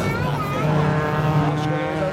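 Rallycross race cars' engines running on the circuit, one engine note held steady through most of it.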